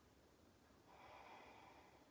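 Near silence, with one faint breath through the nose about a second in, lasting about a second.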